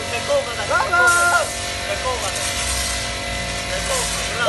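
Electric pressure washer running with a steady motor hum and the hiss of its spray, under loud voices shouting and calling out.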